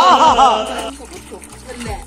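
A man's exclaiming voice from an edited-in meme clip, its pitch rising and falling in loud arcs, stopping about a second in. After it, quieter sounds of hot water being poured from a plastic jerrycan into a plastic bucket.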